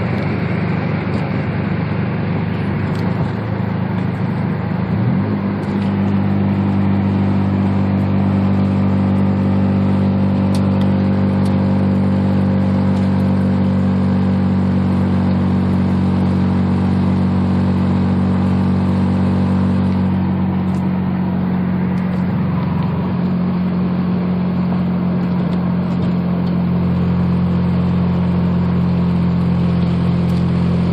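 Mazda RX-7's 13B two-rotor rotary engine with headers and straight pipes, cruising at steady revs around 2,000 rpm, heard from inside the cabin. The exhaust note rises slightly about five seconds in and then holds steady.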